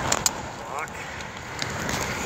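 Handling noise from a phone camera being set and locked into a mount: two or three sharp clicks just after the start, over steady road noise inside a car.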